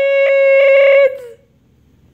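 A person's high-pitched, held scream: one steady note for about a second that dips in pitch and fades out, leaving only faint room noise.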